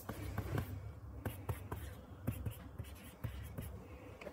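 Stylus writing on a tablet screen: a run of quick, irregular taps and short scratches as numbers are written, over a steady low hum.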